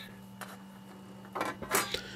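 Faint clicks and light clatter of small parts being handled by hand: one click about half a second in and a short run of clicks around one and a half seconds, over a faint steady hum.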